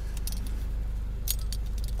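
Scattered light clicks and a brief jingle over a steady low hum.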